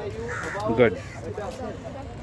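People talking among a group of skaters, with a louder, harsh call rising over the voices a little under a second in.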